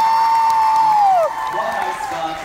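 A person's voice holding one long high note, slid up into, held steady and dropped away about a second and a half in.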